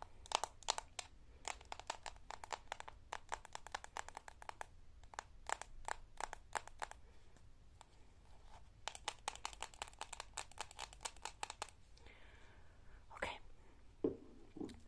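Long fake nails tapping quickly on a plastic body-cream tub, in fast runs of sharp clicks with a short lull in the middle. Near the end comes a brief softer scratching, then one sharper tap.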